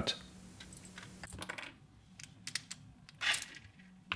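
Small clicks and taps of hands-on handling: little metal binder clips being unclipped and set down on a desk and a plastic filament-welding clamp being opened. A brief, louder rustle about three seconds in, as the non-stick paper is pulled away.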